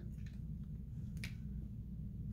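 A felt-tip marker's cap clicking once, a little past a second in, over a low steady room hum.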